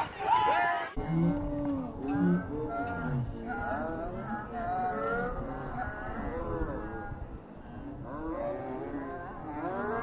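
Several voices shouting and calling at once across an outdoor football pitch, overlapping and too distant to make out.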